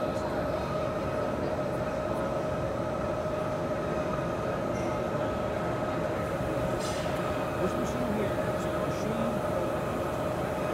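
TRUMPF TruPrint 3000 laser metal fusion printer running during a build, a steady mechanical hum with a constant high tone.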